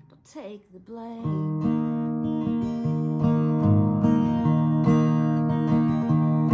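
Acoustic guitar: after a brief quieter pause, steady strummed chords come in about a second in and carry on as an instrumental passage between sung lines.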